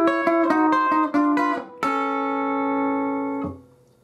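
Electric guitar played clean: a quick run of about eight picked notes, then a long A chord struck a little under two seconds in and left ringing until it is damped about a second before the end.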